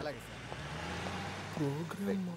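A motor vehicle running, its low steady hum joined by a rush of road noise that swells and fades away; a short vocal sound comes near the end.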